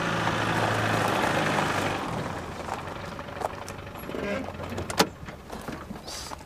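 A Land Rover Defender pulls up: its engine runs with tyres on gravel for the first two seconds, then eases off. A few clicks follow, with a sharp click near the end as the door latch opens.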